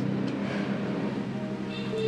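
Background drama underscore: a sustained low chord of held notes with no melody moving.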